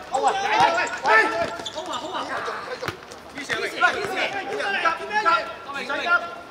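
Players shouting and calling to each other on a hard-surfaced court, with sharp thuds of a football being kicked, the loudest about four seconds in.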